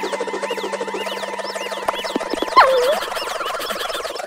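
Cartoon soundtrack effects: a rapid warbling trill over held tones, with a loud sliding pitch that drops steeply about two and a half seconds in.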